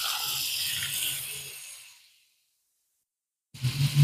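A pat of butter sizzling as it melts on a hot tawa, a steady hiss that fades out about halfway through, leaving a second and a half of silence before the sizzling returns near the end.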